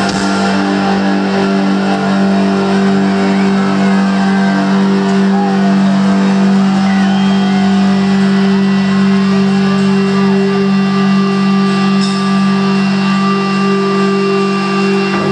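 Live rock band through an arena PA holding one long, loud chord on electric guitars, sustained without a break, with the crowd shouting and cheering underneath.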